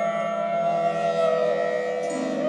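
Slow meditative flute music: one long held flute note that wavers gently up and down in pitch over a steady drone.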